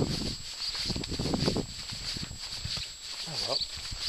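A man's voice, low and indistinct, in a few short murmurs.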